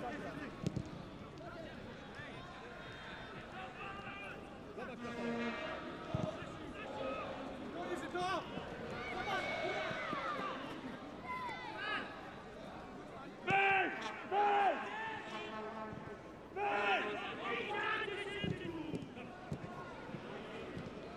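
Men's voices over football-stadium ambience, with two short loud shouts a little past halfway and a longer one near the end.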